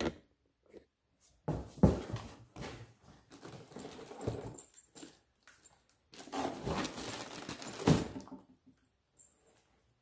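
Rustling and handling noise of plastic-wrapped cables being rummaged through and pulled out of a cardboard box, in two spells with a sharp knock in each, the coiled plasma torch lead among them.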